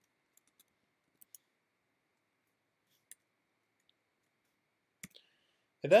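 About eight faint keystrokes on a computer keyboard, scattered over several seconds with quiet gaps between them. A man's voice starts a word right at the end.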